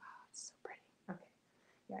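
Quiet whispered speech: a few soft words from the painter, then her normal voice starting near the end.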